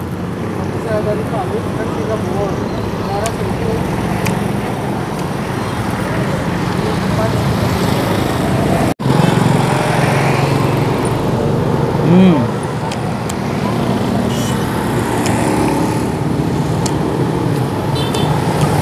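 Steady road traffic from a city street, with vehicles running by. About twelve seconds in, a person eating gives a short hummed "hmm" of approval, and faint voices sound at times.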